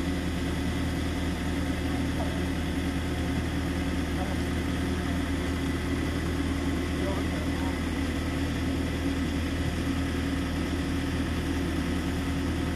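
A motor-vehicle engine idling steadily, a constant low hum, with faint voices behind it.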